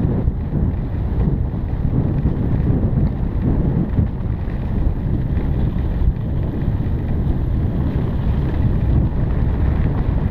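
Wind buffeting the microphone of a mountain bike's on-board camera as the bike rolls along a dirt trail, a steady low rumble with trail and tyre noise mixed in.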